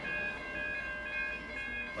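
Idling train at a station: a steady high whine made of several fixed tones over a low rumble.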